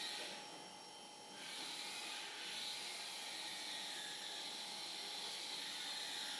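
Faint steady hiss of room tone and recording noise with a thin steady hum, growing a little louder after about a second and a half.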